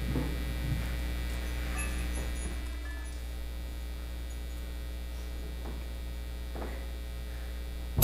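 Steady low electrical mains hum through the sound system, with a few faint knocks and rustles as microphones are set down.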